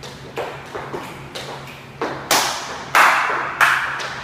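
Dance steps: hard-soled shoes tapping and stamping on a wooden studio floor as a boogie forward is danced, with several light steps at first, then three much louder stamps in the second half, ringing in the room.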